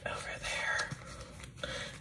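Soft whispering under the breath, with light handling noise from a clear plastic pack of embroidery floss being held and worked open.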